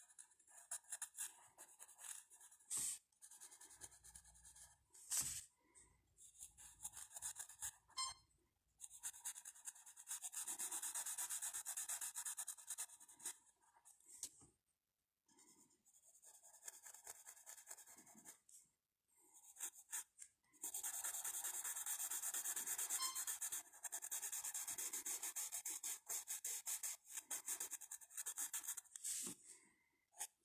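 Graphite pencil shading on paper: rapid back-and-forth strokes making a dry scratching hiss. The strokes come in spells of a few seconds with brief pauses between them, and the longest spell runs through most of the last third.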